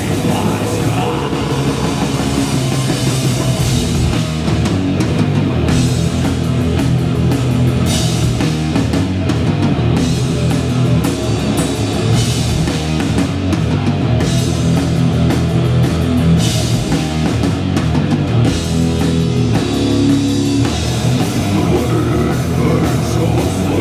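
Live heavy metal band playing at full volume: distorted electric guitar, bass guitar and a drum kit.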